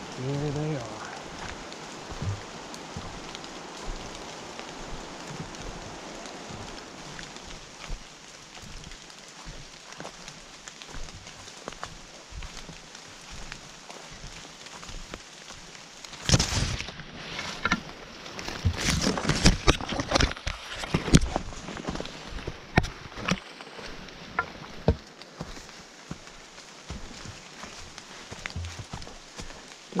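Footsteps through wet fallen leaves on a forest trail, then from about halfway in, loud rustling and crackling as leafy branches brush against the camera, busiest a few seconds later. A brief rising vocal sound at the very start.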